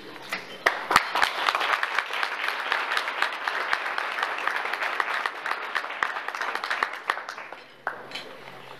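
Audience applauding, starting just under a second in and dying away shortly before the end.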